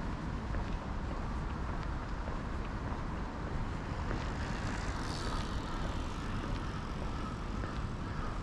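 Steady low outdoor rumble while walking on a paved path, with faint footsteps ticking through it.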